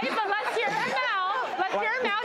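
Speech only: several voices talking over one another in quick crosstalk.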